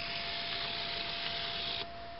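Small electric drive motor of a NOCH HO-scale segment turntable running as the deck swings to the next track: a steady hissy whir that cuts off suddenly near the end, as the self-aligning deck stops in line with the rail.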